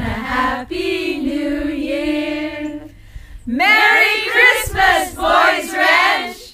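A small women's choir singing a cappella: a long held note that ends about halfway through, a short break, then a louder phrase.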